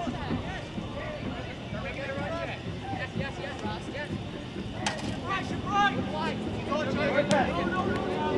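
Game-time ambience at a high school soccer match: scattered shouts and calls from players and spectators, with two sharp knocks about five and seven seconds in.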